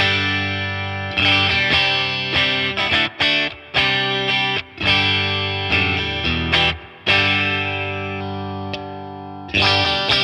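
Fender Player Plus Nashville Telecaster electric guitar played through an amp: rhythmic strummed chords for about seven seconds, then one long ringing chord, and a fresh strum near the end.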